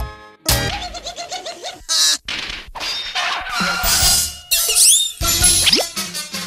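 Cartoon title jingle: bouncy music broken up by comic sound effects, with a short noisy burst about two seconds in and quick sliding whistle glides, up and down, near the end.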